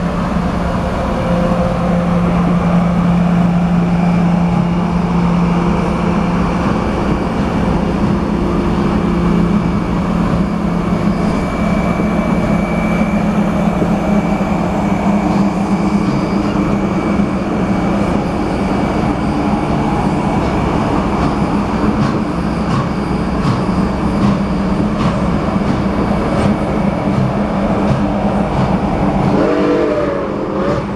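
A train of heritage passenger cars rolling slowly past on the rails: a steady rumble of wheels with a low hum. Wheels click over rail joints, the clicks coming more often in the second half.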